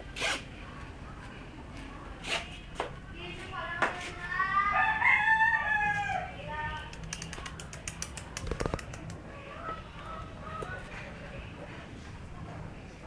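A rooster crowing once about four seconds in, a call of a little over two seconds that rises and then falls. Scattered sharp clicks and knocks come before it, and a run of quick ticks follows.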